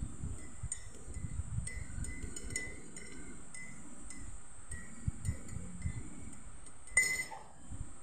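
Metal teaspoon stirring milky coffee in a ceramic mug, clinking lightly against the side about twice a second, with one louder clink about seven seconds in.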